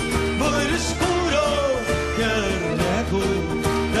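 A live folk band playing: gaita-de-foles (bagpipe) melody over guitars, including a Portuguese guitar, with drums keeping a steady beat.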